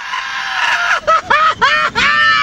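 A series of short, high-pitched cries about a second in, each bending up and then down in pitch, with a long held cry starting at the very end.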